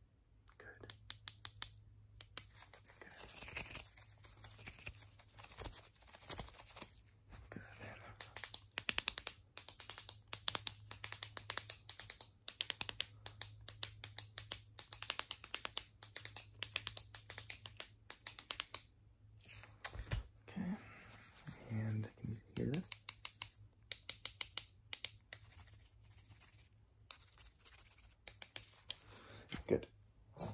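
Rapid runs of sharp clicks and taps close to the microphone, as thin wooden sticks are clacked and tapped together by gloved hands, with brief pauses between runs.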